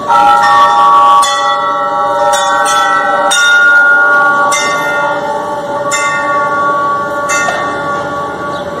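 Altar bells rung at the elevation of the chalice during the consecration at Mass: a series of strikes about a second or so apart, each sounding several tones together that ring on and overlap.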